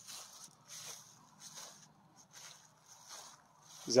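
Faint, soft rustling noises, about five of them spaced under a second apart, over a low steady hum.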